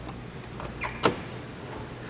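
1957 Chevrolet Bel Air's engine idling low and steady, with a sharp click about a second in.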